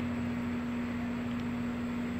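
A steady mechanical hum holding one unchanging tone, with a faint even hiss under it.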